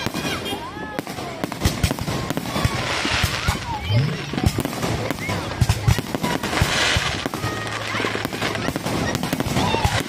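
Aerial fireworks bursting overhead: a dense run of bangs and crackling from many shells going off close together, with voices of people nearby.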